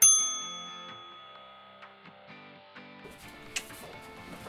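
A single bright bell-like ding sound effect that strikes sharply and rings out, fading over about a second, over quiet background music.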